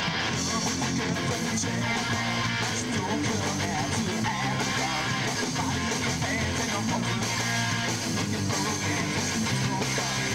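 A live rock band playing without vocals: strummed electric guitars and bass over a drum kit.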